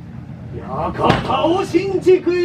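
A kagura performer's drawn-out theatrical voice, with a single sharp thud about a second in.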